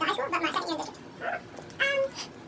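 Short, high-pitched vocal sounds from a person, with a brief louder, higher one near the end.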